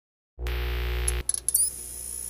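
Electronic logo intro sound effects: a steady low synth drone comes in about a third of a second in and cuts off just after a second, followed by a few short sparkly clicks and a quick glide that leaves a thin high tone ringing.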